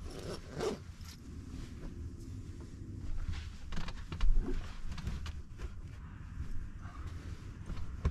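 Fabric rustling and shuffling as a jacket and blankets are gathered up and spread over a bed, with a few short knocks and scrapes, the loudest about halfway through.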